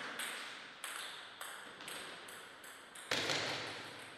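Plastic table tennis ball being hit and bouncing: a run of sharp, high clicks at irregular intervals, the loudest about three seconds in.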